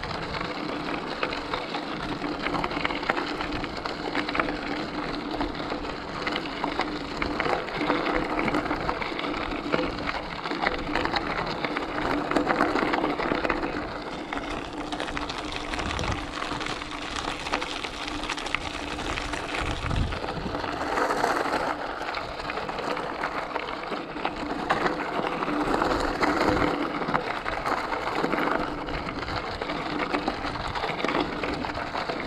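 Bicycle tyres rolling steadily over a loose gravel trail: continuous crunching and crackling of gravel under the wheels, with a few low bumps.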